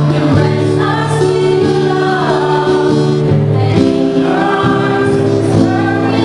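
Mixed choir of men's and women's voices singing together, holding long notes.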